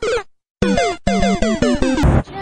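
Comic sound-effect music: a quick run of about six short electronic notes, each sliding downward in pitch, starting just over half a second in.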